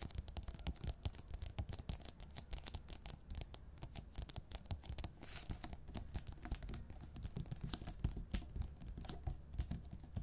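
Fingernails and fingertips tapping rapidly and irregularly on a wood-grain tabletop, with brief scratches of the nails across the surface.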